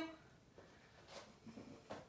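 Near silence: small-room tone, with a faint, short rustle about a second in.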